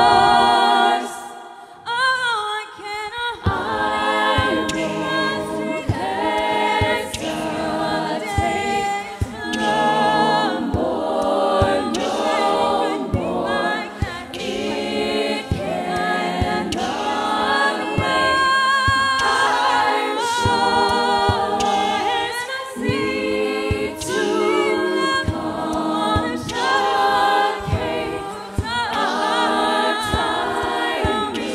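Women's a cappella ensemble singing in close harmony over a beatboxed vocal-percussion beat. About a second in the group briefly drops away, leaving one voice with a sliding run, before the full sound comes back.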